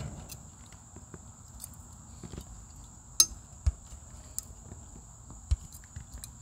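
A few short, sharp metal clicks and taps from locking pliers and a hand seamer gripping a thin welded steel coupon as it is bent back and forth, a bend test of the flux-core weld. Between the clicks it is faint.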